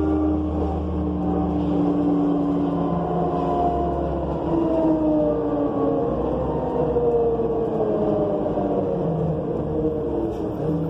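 Interior sound of a moving 2005 New Flyer C40LF bus: its Cummins Westport C Gas Plus natural-gas engine and Allison B400R automatic transmission running under a low rumble, with a pitched drivetrain whine that slowly falls in pitch.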